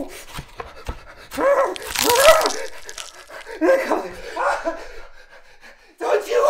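A man panting and gasping in heavy, voiced breaths, in two bouts: the louder, breathiest one about a second and a half in, the second near four seconds in.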